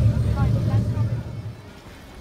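Water taxi engine making a low, steady rumble heard inside the passenger cabin, with faint voices in the background; the rumble dies away about a second and a half in.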